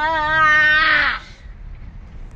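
A girl holding one long sung note with a wavering vibrato, which breaks off in a short harsh rasp about a second in. After that only the low rumble of the moving car's cabin is left.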